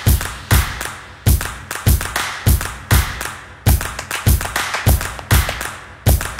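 Gwoka drumming on ka hand drums: a steady rhythm of deep, ringing strikes about every half second, with lighter, sharper slaps in between.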